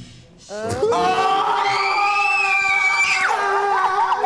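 A group of people screaming in excitement: one long, high-pitched scream held for about three seconds, starting about half a second in and wavering near the end.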